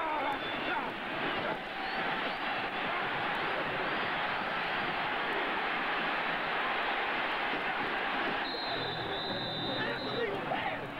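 Stadium crowd noise during a football play, with shouts from players on the field. A long, high referee's whistle sounds in the last second and a half as the play is blown dead.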